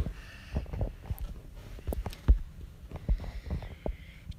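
Irregular soft low thumps and knocks, about a dozen, the strongest a little past two seconds in: handling noise on the recording device's microphone.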